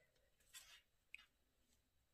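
Near silence, with a faint brief rustle of fabric being handled about half a second in and a small click just after a second.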